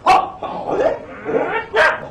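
Several short, loud, dog-like vocal yelps from a performer.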